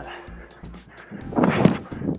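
A player's slide tackle on grass: a short, loud, rough scrape of the body sliding over the turf, about a second and a half in.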